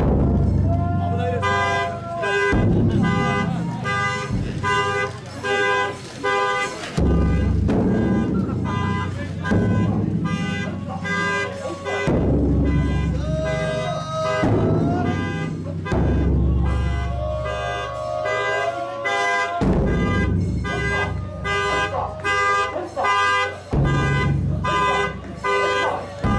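A large festival taiko drum struck about every three to five seconds, each deep boom holding for a few seconds. Over it run repeated high ringing tones at fixed pitches and some voices.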